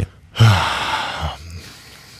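A man's long breath out, a sigh, close to the microphone: it starts with a brief voiced sound about half a second in and fades out over about a second.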